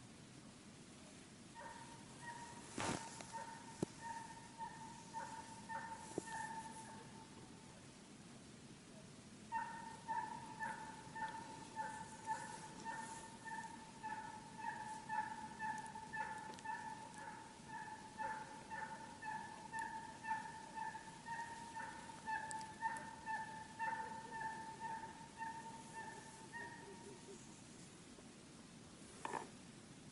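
A hunting horn blown on one steady note in a long run of short, rapid pulses, calling the hounds back in. It sounds for a few seconds, pauses briefly, then goes on much longer. A single sharp click comes about three seconds in.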